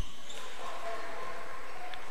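Live court sound of an indoor basketball game in a gym: steady hall noise with faint short squeaks from players' shoes.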